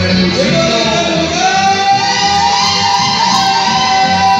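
Chamamé played live on acoustic guitars and accordion, with a long held high note over the ensemble from about a second in.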